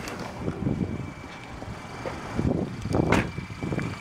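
Handling and rustling noise of a person climbing out of a car, with a sharp knock about three seconds in, and a faint steady high tone from about halfway.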